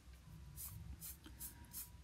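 Faint scratching of a small paintbrush's bristles across a wooden board as a watery chalk mixture is brushed on, in about four quick strokes.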